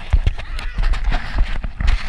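Irregular knocks and rubbing of a small action camera being handled and swung about, with wind rumbling on its microphone.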